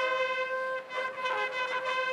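Brass instruments playing music, holding one long note while other notes move briefly around it.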